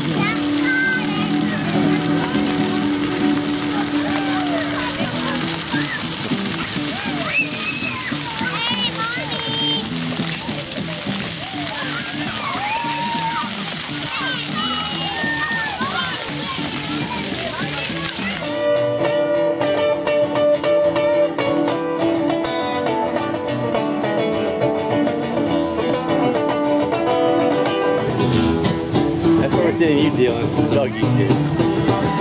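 Splash-pad fountain jets spraying water onto wet paving, with children's voices and music in the background. About two-thirds of the way through, the water sound cuts off and music carries on, louder and clearer.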